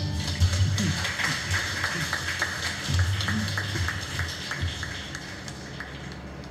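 The band stops on its last note right at the start, then audience applause that dies away over about five seconds.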